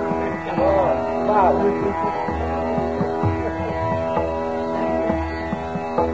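Hindustani classical khayal in Raga Yaman Kalyan: a male voice sings a short gliding phrase in the first second and a half, then rests while a steady drone accompaniment and occasional tabla strokes carry on.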